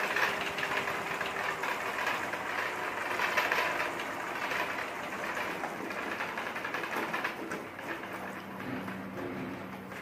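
Model helicopter's motor and gear drive running, its main rotor spinning steadily with a whirring drone. The sound eases off somewhat near the end.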